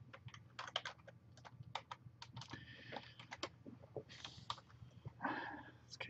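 Typing on a computer keyboard: faint, irregular key clicks as a shell command is keyed in.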